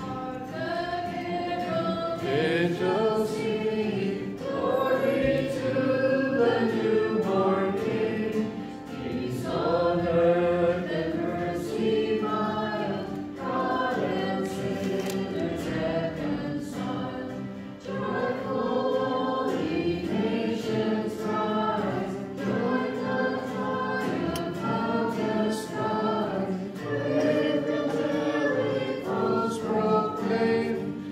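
A church choir singing the closing hymn of a Mass in sung phrases.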